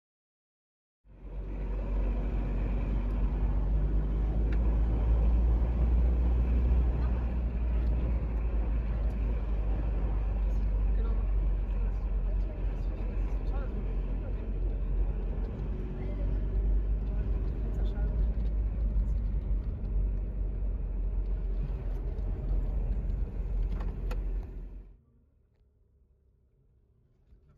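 A car driving on a sandy, unpaved desert track: steady engine and tyre noise with a heavy deep rumble. It starts suddenly about a second in and cuts off suddenly near the end.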